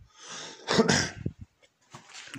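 A person's short, sudden burst of breath and voice: a breathy build-up, then one loud explosive burst about a second in.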